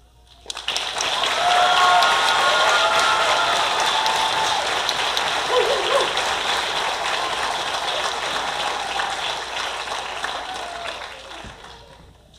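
Auditorium audience applauding, with a few voices cheering over the clapping in the first few seconds. The applause rises quickly about half a second in and fades out near the end.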